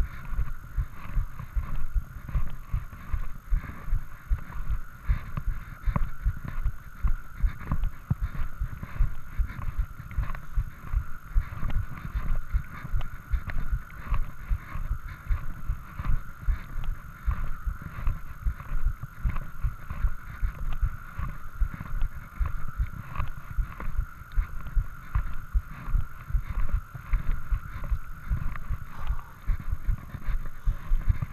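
Running footsteps jolting a handheld camera: a quick, even rhythm of low thuds, about three a second, over a faint steady whine.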